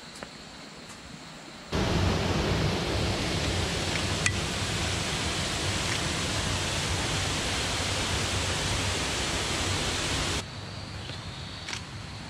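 A steady, loud rush of flowing creek water that cuts in abruptly about two seconds in and cuts off just as abruptly about ten seconds in.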